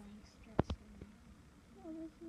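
Two light clicks in quick succession about half a second in, then a soft, drawn-out voice sound from one of the watching children near the end.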